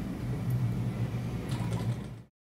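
Steady low hum of room noise, like a building's ventilation, with no speech.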